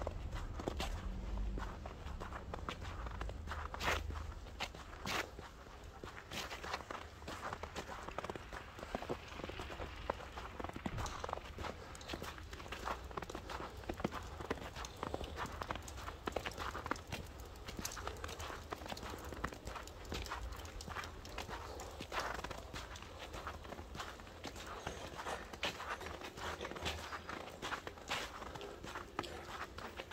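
Footsteps crunching on packed snow at a steady walking pace, with a low rumble under them.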